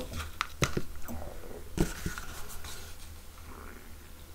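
Blue plastic spoon scooping gold embossing powder from a bowl and sprinkling it over cardstock: a few light clicks and taps in the first two seconds, then a faint soft rustle.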